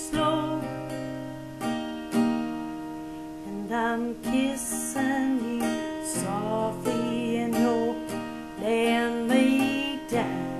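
A woman singing a slow country ballad, accompanying herself on a strummed acoustic guitar; the sung phrases come and go over steadily ringing chords.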